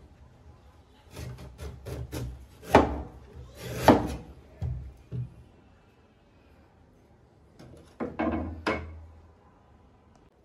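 Meat cleaver cutting the husk off a palm fruit on a wooden chopping board: a run of quick knocks, two louder chops about three and four seconds in, a pause, then a few more knocks near the end.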